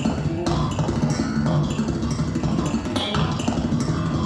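Electric bass guitar playing a busy melodic line in a live jazz big-band performance, with drums behind it.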